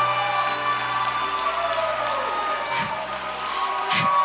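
Soft sustained background music with a congregation cheering and applauding over it.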